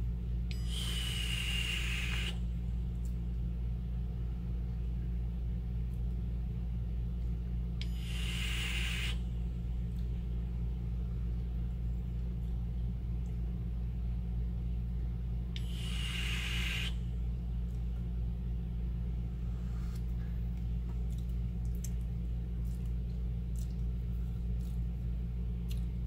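Three long draws on a box-mod vape with a dripping atomiser on a freshly wicked coil, about seven seconds apart. Each is about a second and a half of airy hiss with a faint whistle, over a steady low hum.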